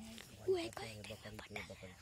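Quiet, low speech, soft and close to whispering.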